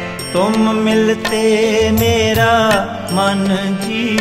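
Shabad kirtan music: a gliding, ornamented melody line with vibrato over sustained low notes, with tabla strokes.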